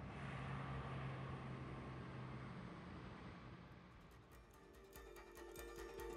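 Faint ambient noise with a low steady hum, then plucked-string background music fades in about four seconds in.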